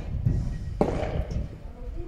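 Two sharp knocks of a padel ball being played, one at the start and a louder one a little under a second in, over a steady low rumble.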